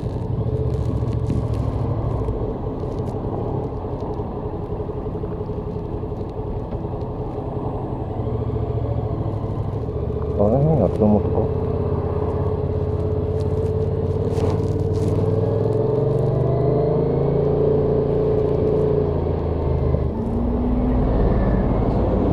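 Yamaha XSR700's parallel-twin engine running at low speed in slow traffic, then holding a steady pitch from about halfway as the bike moves along the opening lane. The tone changes near the end.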